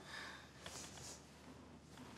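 Near silence: faint room tone with a couple of soft ticks in the first second.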